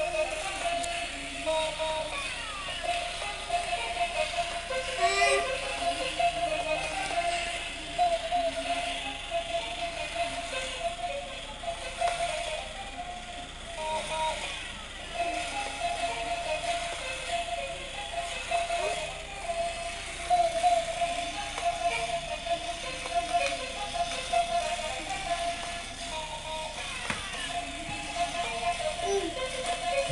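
A battery-powered walking toy crocodile playing a simple electronic tune, a thin melody that steps up and down without pause, over a plastic rattle from its walking mechanism.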